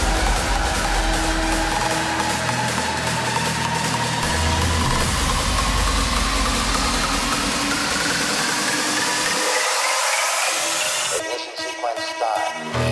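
Hardstyle track build-up played over a live PA: a long rising sweep over a dense noisy wash with a low rumble, the low end cutting out about nine seconds in, ahead of the drop.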